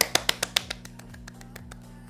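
A quick run of about seven small, sharp hand claps in the first second, then only quiet background music.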